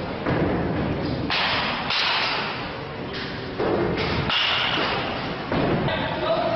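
About six sudden thuds and impacts in an indoor batting cage facility, each trailing off briefly: baseballs being hit and striking cage netting.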